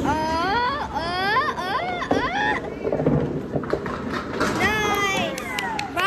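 A young child's high-pitched wordless vocalizing, rising and falling squeals in two stretches, over the low rumble of a bowling ball rolling down a wooden lane, with a few sharp clacks near the end as pins are knocked down.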